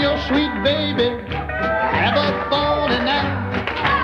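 Country band playing a song, with gliding melody lines over a steady bass.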